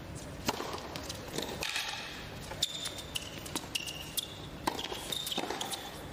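A tennis rally on a hard court: rackets striking the ball in sharp pops about once a second, with short high squeaks of shoes between the shots.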